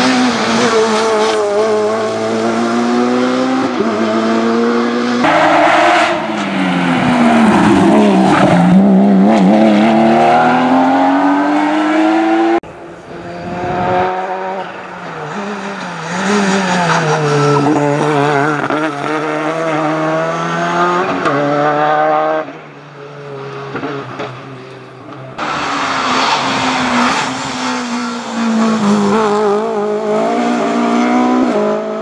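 Rally cars coming past one after another under hard acceleration. Each engine note climbs through the gears and drops on lift-off and downshifts, and the sound breaks off abruptly between cars.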